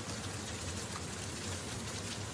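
Sound effect of a burning fire: a steady, even crackling hiss.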